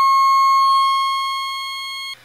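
Lockhart wavefolder (Ken Stone CGS52) synth module putting out a steady, high, buzzy tone rich in overtones, its pitch unchanging; it fades away through the second half.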